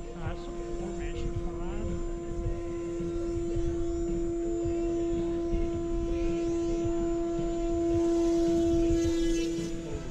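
Electric R/C model airplane motor and propeller giving a steady mid-pitched whine that grows louder near the end, as a plane comes in close.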